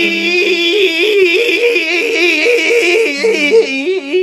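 A man singing one long held note that wavers back and forth between two pitches, the flips getting quicker near the end, over a strummed acoustic guitar.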